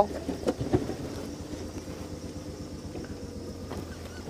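Open safari vehicle's engine running steadily as it drives slowly along a sandy dirt track, with a few knocks and rattles from the body in the first second.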